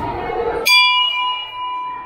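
A hanging temple bell struck once by hand about two-thirds of a second in, ringing on in a clear, steady tone for over a second. A rustling noise comes before the strike.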